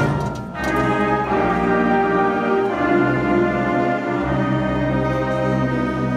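High school concert band of woodwinds and brass playing. A loud passage breaks off at the start, and the band comes back in about half a second later with full, held chords that carry on steadily.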